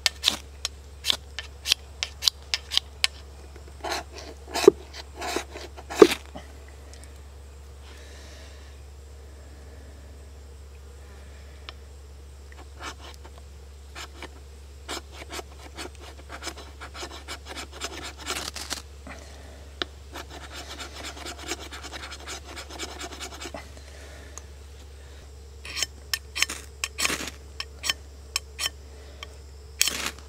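The spine of a KA-BAR Pestilence Chopper is scraped down a ferrocerium rod in runs of sharp strokes with pauses between, striking sparks into wood shavings. The spine is not ground to a crisp 90-degree edge, so it takes many strokes to scrape through the rod's coating. Near the end a group of strong strokes throws a shower of sparks.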